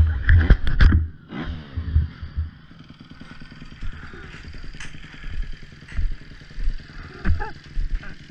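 Motocross dirt bike engine: loud and rough for the first second, then winding down with a falling pitch about a second in, and running steadily at low revs as the bike rolls slowly along.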